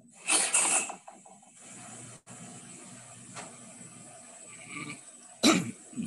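Two short cough-like bursts: a loud one near the start lasting about half a second, and a sharper one with a sudden onset about five and a half seconds in. A faint steady hum runs between them.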